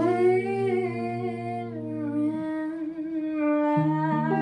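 A woman's voice sings a long wordless note that bends up and then holds, over electric guitar chords in a jazz ballad. The guitar chord stops about halfway through, and a new chord comes in near the end.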